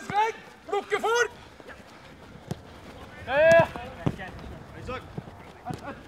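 Football players' short shouted calls across a training pitch, the loudest about halfway through, with a few sharp thuds of a football being kicked in between.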